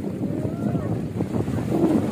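Small waves washing over the sand at the shoreline, with wind buffeting the microphone in a steady rumble, and faint distant voices calling over it.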